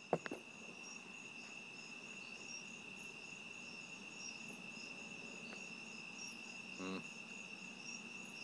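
Crickets chirping at night: a steady high trill with a faster run of short pulsing chirps above it. A small click just after the start and a brief hum near the end.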